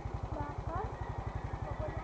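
Motorcycle engine idling with a steady, rapid low putter.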